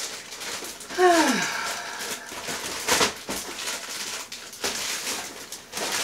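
Plastic wrapping rustling and crinkling as a photo print is unwrapped and handled, with scattered clicks, a sharp one about three seconds in. About a second in, a brief vocal sound falls in pitch.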